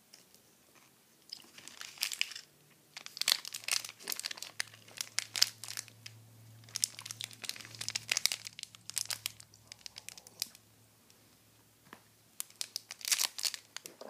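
Plastic snack wrapper crinkling as it is handled in the hands, in several irregular bursts of crackle with short quiet gaps between them.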